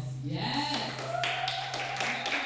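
Audience clapping and cheering, breaking out about half a second in and growing fuller, over a held low note from the performance music.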